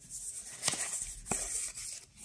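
Paper and card packaging being handled and slid against each other, rustling, with two sharp clicks about half a second apart in the middle.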